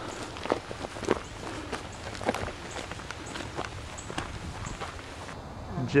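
Footsteps on a loose gravel road, a step a little more than every half second, thinning out after about five seconds.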